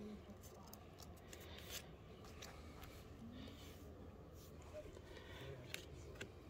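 Faint rustling and light clicks of Pokémon trading cards being handled and flipped through by hand.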